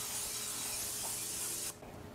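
Pam aerosol cooking spray hissing in one steady spray as it greases a metal tube pan, stopping shortly before the end.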